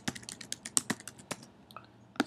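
Typing on a computer keyboard: a quick, irregular run of key clicks that stops about two-thirds of the way in, with one more click near the end.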